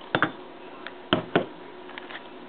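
Three light clicks and knocks from ice cubes and a glass of iced tea being handled: one near the start, then two close together a little past the middle.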